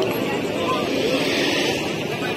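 Busy street background: a steady rush of passing traffic with people talking nearby.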